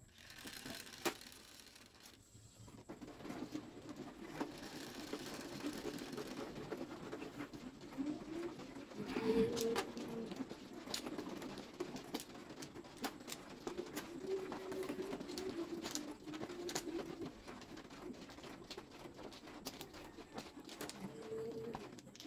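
An automatic mahjong table's shuffling mechanism running with a steady low drone after its start button is pressed. From about nine seconds in, plastic mahjong tiles click and clack sharply as they are drawn and set in rows.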